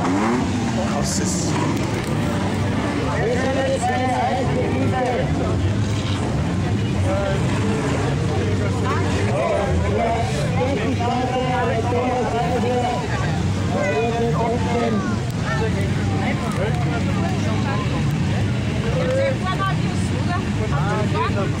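Several unmodified stock cars of over 1800 cc idling and being revved on the start line, the engine notes rising and falling again and again, with people talking over them.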